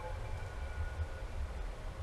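Steady room noise: a low rumble with an even hiss underneath.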